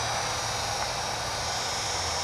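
Flyzone Nieuport 17 micro RC biplane's small battery-powered electric motor and propeller in flight overhead: a steady, faint high whine over an even hiss.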